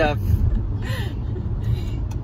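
Steady low rumble of a car heard from inside the cabin, with a word ending at the start and a short bit of speech about a second in.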